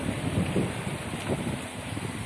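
Steady rushing noise of wind buffeting the microphone.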